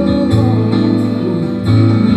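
Live jazz ballad played by a small band, with plucked upright double bass notes and keyboard chords.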